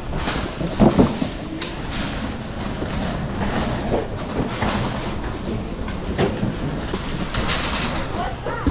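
Wire shopping cart rolling over a concrete floor, its wheels and metal basket rattling steadily, with a few louder knocks about a second in.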